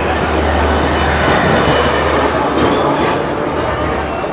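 Hong Kong double-decker electric tram running on street rails: a loud, steady rumble and rattle of its wheels and running gear.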